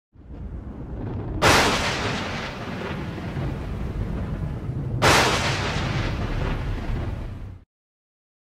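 Logo-intro sound effect: two heavy cinematic boom hits about three and a half seconds apart, each trailing off over a low rumble, which cuts off suddenly near the end.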